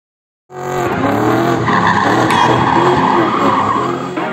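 A car drifting: its engine running at high revs with a wavering pitch while its tyres squeal. The sound starts about half a second in and stays loud.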